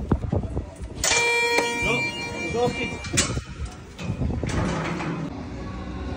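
Electronic beep of a stadium turnstile's ticket scanner, one steady tone lasting about two seconds as a phone's barcode ticket is read, followed by a sharp click.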